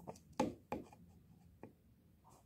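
Three light knocks of a plastic toy horse figure being moved and set down on a tabletop, the first the loudest, with faint handling rubs between.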